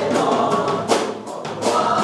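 A live worship band playing: a male singer singing over drum kit, guitars and keyboard, with cymbal crashes. The band drops back briefly just past halfway, then comes in full again.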